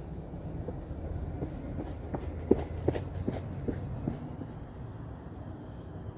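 Footsteps of a runner on a woodland dirt path: soft, even taps about two and a half a second, over a low steady rumble.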